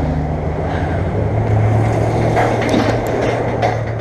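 Road traffic passing close by: a vehicle's engine hum and tyre noise, pretty loud and steady, easing off near the end.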